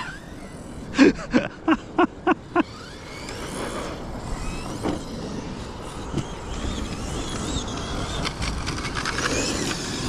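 A short run of laughter, then the high whine of a brushless electric RC monster truck's motor as it drives over grass. The whine rises and falls in pitch with the throttle and grows louder toward the end as the truck comes closer.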